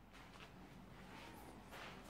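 Near silence, with a few faint, short scuffs of footsteps on a gritty concrete floor.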